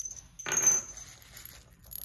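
Small ceramic Santa bells clinking and ringing as they are handled: a bright clink about half a second in that rings on briefly, then fainter clinks near the end.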